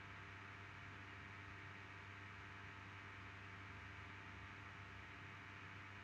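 Near silence: room tone, a faint steady hum and hiss.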